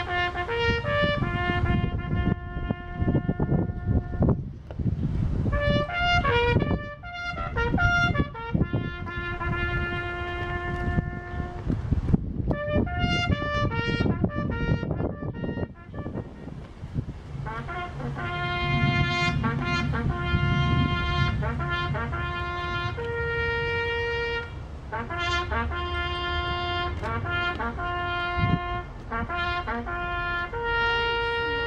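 A solo bugle call on a brass horn, the notes falling on the horn's natural harmonic series: long held notes broken by quick runs of repeated notes, about six seconds in and again about twelve seconds in. Several long held notes follow in the second half.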